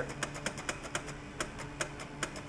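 Stock ticker tape machine clicking as it steps and prints onto paper tape, driven by pulses from a hand-tapped key, in an even rhythm of about four to five clicks a second. A low steady hum runs underneath.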